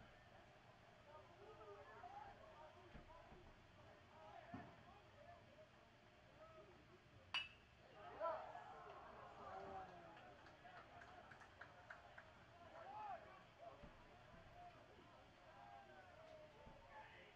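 Quiet ballpark ambience with faint distant voices calling, broken about seven seconds in by one sharp, ringing ping of a pitched baseball striking at home plate.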